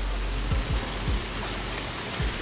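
Steady hiss of the reverberant brick tunnel's background noise, with a few soft low thumps of footsteps on its wet floor about half a second and a second in.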